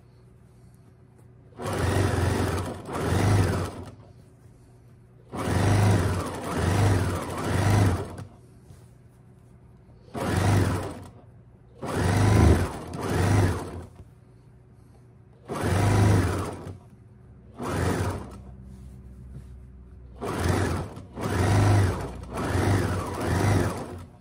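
An electric home sewing machine stitching a hem in seven short runs of one to three seconds each, stopping between runs while the fabric is repositioned.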